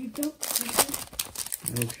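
Foil trading-card booster pack crinkling in the hands as it is opened and the cards are slid out of the wrapper, in a run of quick crackles.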